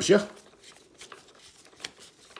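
Screwdriver turning a screw in the plastic housing of a Vax Blade 32V cordless vacuum: faint ticks and scrapes, with one sharper click near the end.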